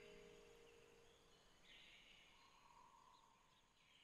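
Near silence: the last of the music dies away during the first second or so, leaving only faint high chirps.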